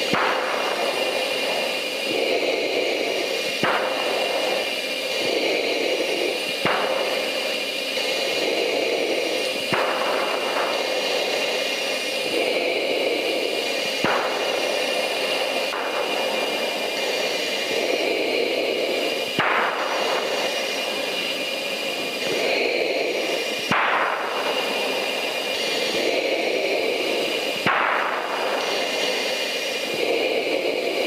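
In-flight jet aircraft noise: a steady rush with a constant high-pitched whine, broken by a short sharp click every three to four seconds.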